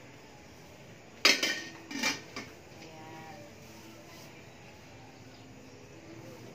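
Stainless steel steamer lid being set onto the pot: a loud metal clank about a second in and a second clank shortly after, each with a brief ringing.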